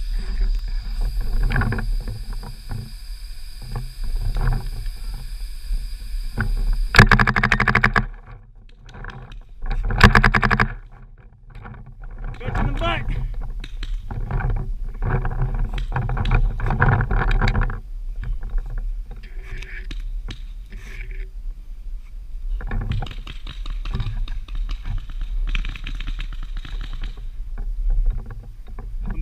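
Rustling movement and low wind rumble on a body-worn camera, with muffled voices in the middle of the stretch. There are two loud bursts of noise about 7 and 10 seconds in.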